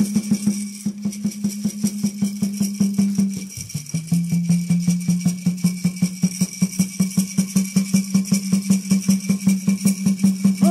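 Peyote-song water drum beaten in a fast, even roll of about five beats a second, its ringing tone dipping lower about three and a half seconds in, with a gourd rattle shaking along at a steady rate.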